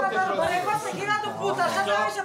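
Several people talking over one another, with overlapping voices throughout.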